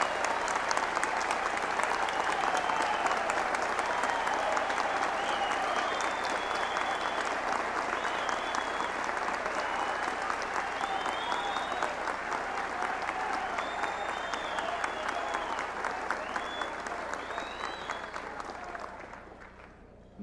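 Large audience applauding, a sustained burst of clapping with voices calling out over it, dying away near the end.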